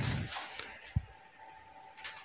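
Quiet room with one soft, low knock about a second in, followed by a faint, thin steady tone.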